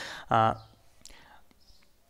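Speech only: a man's voice says one short syllable, trails off into a soft, breathy sound, then pauses.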